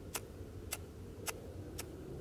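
Small handheld spark striker clicking at an even pace, about two sharp strikes a second, throwing sparks at a solid fire-starter cube to try to light it.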